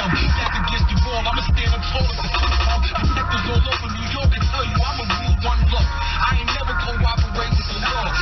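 Hip hop track with rapping over a bass-heavy beat, playing on a car radio inside the cabin.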